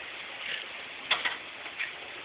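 A few light clicks and taps, the sharpest about a second in, from hands working the body panel and push-type fasteners of a battery-operated tricycle.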